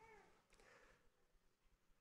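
Near silence in a room, broken once at the very start by a brief, faint high-pitched sound that rises and falls.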